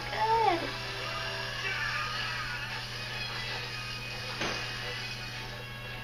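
Faint background music and voices, like a television playing, over a steady low hum.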